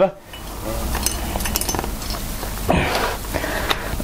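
Handling noise while an inflator hose is swapped over on a tyre valve: rustling, with a cluster of small clicks about a second in, after a cough at the start.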